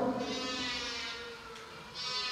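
A pause between a man's spoken lines: only a faint steady background hum, slowly growing fainter.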